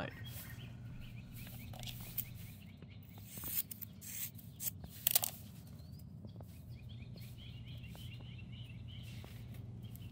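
Faint rustling and light clicks of fiberglass exhaust wrap and wire hardware cloth being handled on paving stones, over a low steady hum, with birds chirping faintly in the background.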